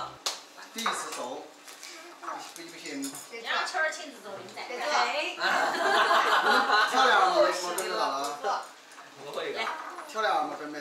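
Several people chatting and laughing together at a dinner table, the talk and laughter loudest in the middle, with a few light clicks of tableware.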